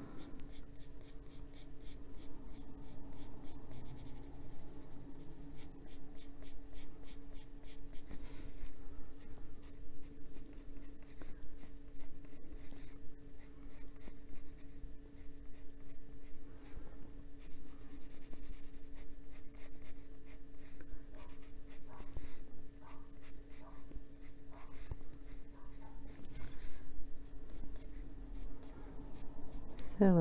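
Colored pencil shading on coloring-book paper: quick, continuous scratchy back-and-forth strokes as colour is built up around the edges of an area. A faint steady hum runs underneath.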